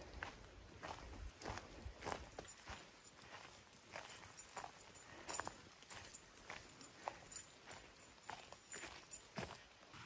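Footsteps on a dirt forest trail, faint and irregular, crunching through grass, twigs and undergrowth.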